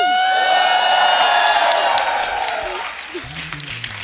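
A long held shout on one slowly falling note, fading after about two and a half seconds, over studio audience applause and cheering. A low bass beat of entrance music comes in near the end.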